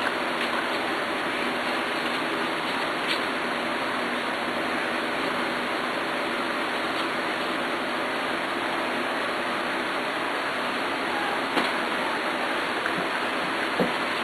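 Steady rushing background noise, even and unbroken, with a couple of faint clicks.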